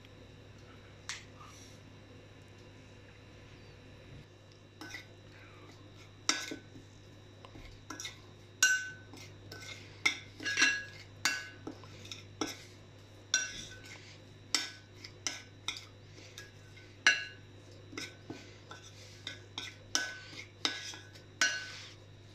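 Metal spoon stirring a spice-and-lemon marinade in a glass bowl, clinking and scraping against the glass with short ringing clinks, irregular, starting about five seconds in.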